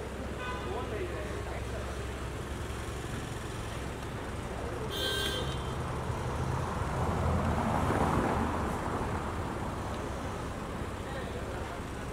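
A car engine running close by amid street traffic noise. A brief horn toot comes about five seconds in, and the engine and road noise swell louder around eight seconds.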